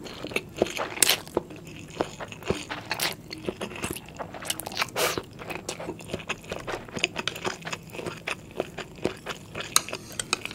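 Close-miked chewing and slurping of stir-fried instant noodles (Indomie Mi Goreng): a dense run of wet mouth clicks and smacks, with a few short slurps as strands are drawn in.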